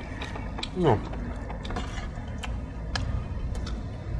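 A mouthful of raw scallion bulbs being chewed: small irregular crunching clicks over a low steady rumble. A short vocal sound with a falling pitch comes about a second in.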